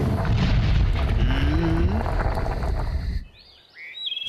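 Loud, rumbling cartoon sound effect with a low sliding tone in the middle, stopping abruptly about three seconds in. A few faint, high chirps follow near the end.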